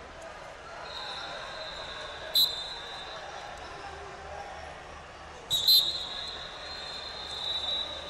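Two short, sharp whistle blasts, about three seconds apart, with a fainter steady high whistle tone held beneath them. Behind them is the babble of voices in a busy wrestling hall.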